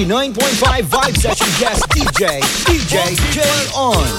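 A DJ scratching a record by hand on a turntable over a playing music mix: quick back-and-forth pitch sweeps, several a second.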